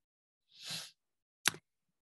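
A soft breath taken at the microphone, then a single sharp click about a second later, with dead silence between them.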